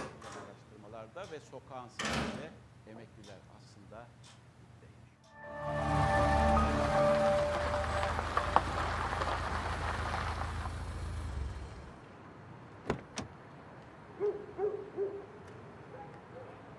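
A car pulling up, loud for about six seconds before fading out. Then a couple of sharp clicks and an owl hooting three short times.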